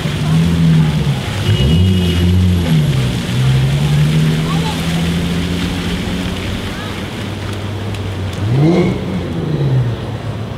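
Splash-pad fountain jets spraying onto wet pavement as a steady hiss, under a low vehicle motor hum whose pitch rises and falls several times, with a quick climb and drop near the end.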